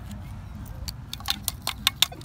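A quick run of light metallic clicks and clinks, loudest near the end: a small die-cast toy truck tapping against a metal beach sand scoop.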